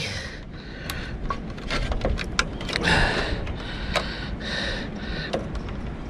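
Scattered light clicks and rattles of wires and connectors being handled inside an RV rooftop air conditioner's electrical box, over low steady background noise.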